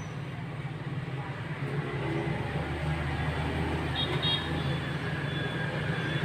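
Road traffic noise: a vehicle's low rumble swells from about two seconds in and fades near the end, over a steady low hum, with a brief high toot about four seconds in.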